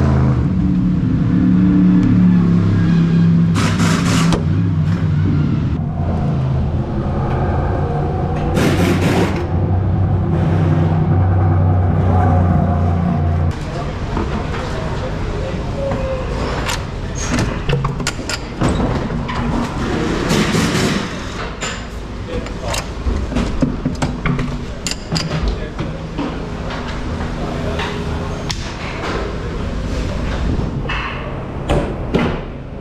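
Oreca LMP2 race car's engine running at a steady idle, with two loud hissing bursts about 4 and 9 seconds in, then cut off abruptly about 13 seconds in. After that, a run of sharp clicks and clatter as mechanics work on the car's wheels.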